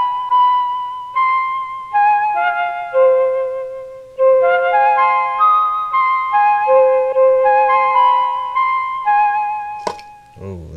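Mellotron software instrument playing a slow melody of held, overlapping notes, kept in one key by Scaler 2's key lock. A sharp click near the end.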